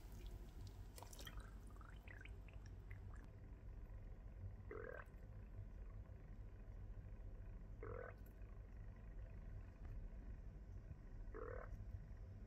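Air bubbles burping out of an embalmed chicken leg submerged in formalin: three faint, short gurgles, each rising in pitch, about three seconds apart.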